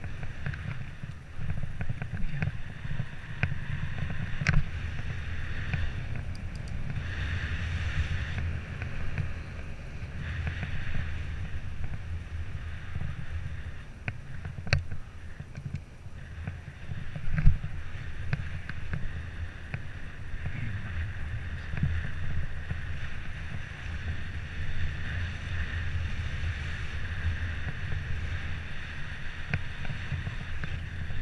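Wind buffeting the microphone of a camera on a moving bike, with a steady road rumble and a few sharp knocks, the loudest about seventeen seconds in.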